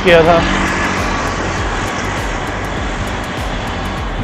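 Steady rushing noise of wind and road traffic while cycling along a city road, heard from a camera carried on the moving bicycle.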